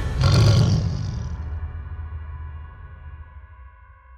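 A trailer sound-effect impact: a heavy boom a quarter of a second in, then a ringing tone that fades away slowly.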